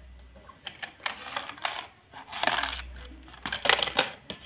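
Small hard toy pieces clicking and clattering against a cardboard box as it is handled, in a quick string of sharp clicks and short rattling bursts, loudest about two and a half seconds in and again near the end.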